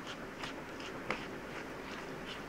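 Steel spoon stirring a wet semolina and vegetable batter in a bowl: faint scrapes and soft clicks, with one slightly louder click about a second in.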